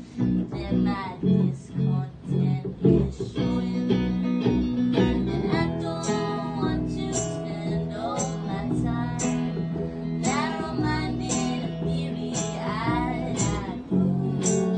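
Small live band playing: electric guitar and upright double bass with a woman singing. The first few seconds have short picked notes in a quick rhythm, then the band settles into held chords under the singing.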